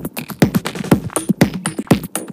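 Electronic dance music played from CDJ decks through a DJ mixer, with a steady kick drum about twice a second and hi-hats between the beats.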